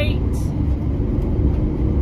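Steady low rumble of road and engine noise inside the cabin of a moving 2021 Ram Promaster 2500 cargo van.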